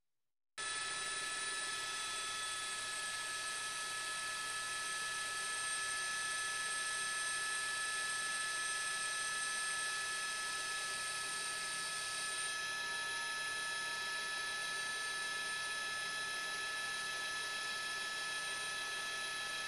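A steady electronic hiss with several high, held whining tones, starting suddenly about half a second in and staying unchanged.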